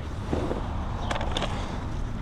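Hands working a lettuce seedling's soil-covered root ball: a soft crackle of soil with a few faint clicks about a second in, over a steady low background hum.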